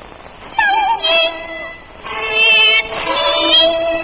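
A woman singing in high Cantonese opera style over melodic instrumental accompaniment. Held notes with vibrato come in phrases, the first starting about half a second in.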